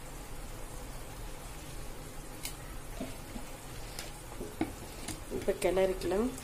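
Rice cooking in boiling spiced water in a biryani pot: a steady bubbling hiss, with a few light clicks from about two and a half seconds in.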